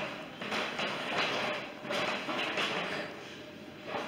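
Footsteps on a hard floor, about one every two-thirds of a second, easing off near the end.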